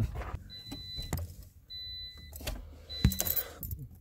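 Car keys jangling and clicking as the key goes into the ignition and is turned to the on position, while an electronic warning chime sounds three times, about a second apart.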